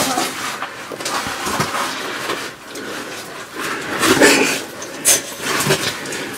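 Clothing and boots scraping and rustling against limestone as a person squeezes down through a narrow crevice, with a few short knocks and scuffs. The sharpest comes about five seconds in.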